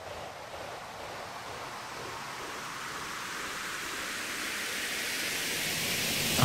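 Synthesized white-noise riser in an electronic dance track, swelling steadily louder and brighter as a build-up section.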